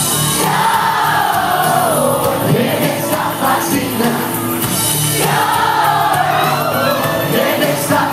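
Live concert music as heard from among the audience: a ballad sung in two long, gliding phrases over the band, with crowd voices mixed in.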